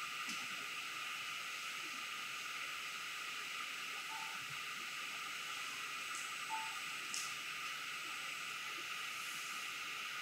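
Steady hiss of room tone and microphone noise, with a few faint light clicks from metal altar vessels being handled about six and seven seconds in.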